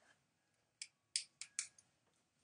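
A pen being picked up and handled over the desk: a quick run of five or so sharp little clicks in the second half.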